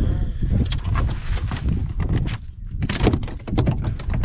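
Knocks and clattering of gear being handled aboard a small fiberglass boat, in clusters about a second in and again near three seconds in, over a low wind rumble on the microphone.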